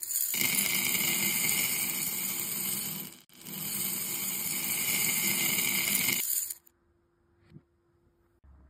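Many small water beads (Orbeez) pouring into a bowl: a dense, continuous rattle in two long runs, broken briefly about three seconds in, that cuts off suddenly after about six and a half seconds.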